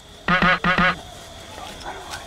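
A duck quacking twice in quick succession, two short loud nasal calls about a third of a second apart.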